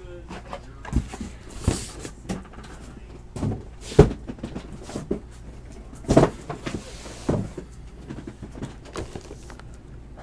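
Cardboard trading-card hobby boxes being lifted, shuffled and set down on a table, giving a series of separate knocks and thumps, the loudest about four seconds in, with a brief rustle near two seconds.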